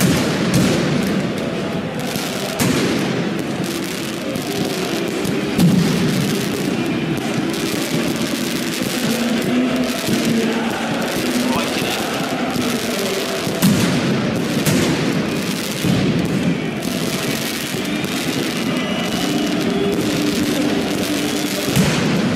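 Football ultras chanting in a stadium over a steady barrage of firecracker and firework bangs, with a few louder bangs standing out.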